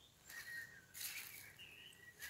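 Faint bird calls: a few thin, high chirps, with soft rustling between them.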